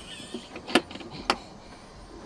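Two sharp clicks about half a second apart as the push-button knob latch of a wooden cabinet door is pressed and released and the door swings open.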